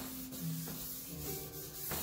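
Charcoal rubbing and scratching across drawing paper in short strokes.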